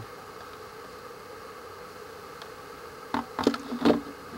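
Steady low background hiss with a faint hum, then near the end a few short knocks and scrapes as a hollow plastic toy blaster is handled and picked up off a concrete surface.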